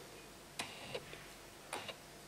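Two faint short clicks with a brief rustle, about a second apart, as a hand shifts its grip on a bowie knife's handle.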